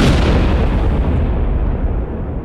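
An explosion-like sound effect: a sudden loud blast, then a heavy, noisy rumble that keeps on at high level.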